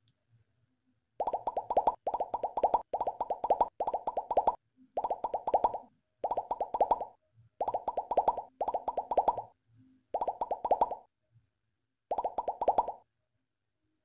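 Ratchet screwdriver clicking in about ten short bursts with pauses between, one burst per return stroke, as a screw is driven in to fix a switch board to the wooden post. Right at the end comes a short, loud falling tone.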